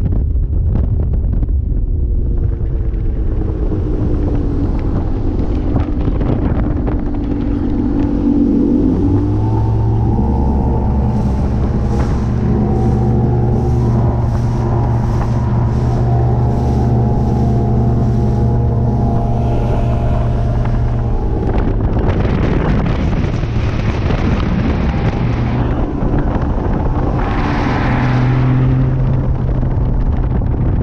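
A Mercury 250 Pro XS outboard drives a bass boat at speed, with wind rushing over the microphone. The engine note wavers at first, then holds as a steady high drone for about ten seconds. Past the two-thirds mark the steady note breaks into rougher noise, with a brief rising tone near the end.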